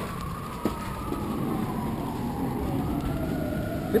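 Bus-station traffic noise with a single whining tone that slowly rises, falls and rises again in pitch.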